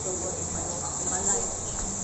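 Steady high-pitched insect drone, with faint voices talking in the background.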